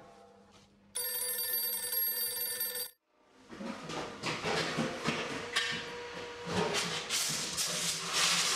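A bell rings steadily for about two seconds and cuts off suddenly. After a brief silence, steam hisses continuously, with occasional knocks of metal beer kegs being handled.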